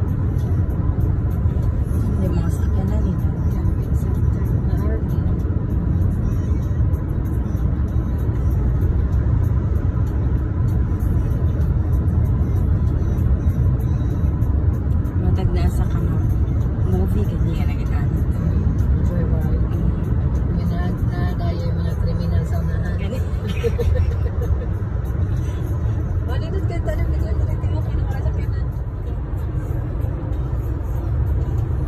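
Steady low road and engine rumble heard inside a car's cabin while cruising at highway speed.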